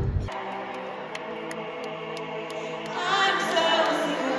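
Live pop concert music from a stadium stage: sustained chords over a light ticking beat, with a singing voice coming in about three seconds in.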